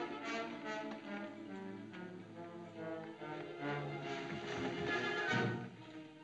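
Orchestral film score led by bowed strings, with sustained notes that swell to a peak about five seconds in and then fall away just before the end.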